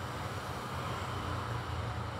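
Steady low background hum with a faint hiss, no distinct sound events.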